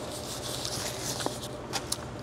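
Paper napkin rustling and rubbing as hands are wiped, with a few light clicks in the second half.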